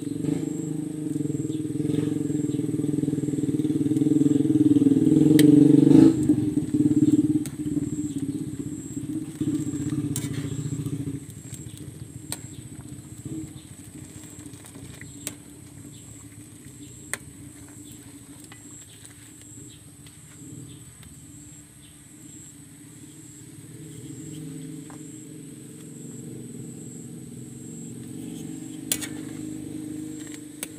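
An engine running, growing louder over the first six seconds, fading by about eleven seconds and returning more faintly near the end. Scattered sharp pops from a wood cooking fire come through now and then.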